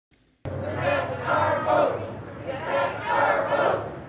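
A crowd of protesters chanting a slogan in unison, echoing; the chanted phrase comes twice.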